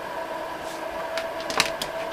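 A steady electrical whine made of several tones, with a few light clicks a little past halfway.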